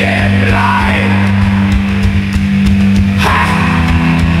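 Rock music with no vocals: guitar over drums, with a low chord held steadily and cymbals ticking. The chord changes about three seconds in.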